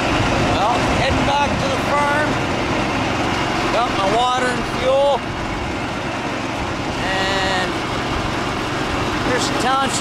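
A small motor vehicle running along a gravel road, with steady engine, tyre and wind noise. A few short voice-like sounds rise and fall over it several times.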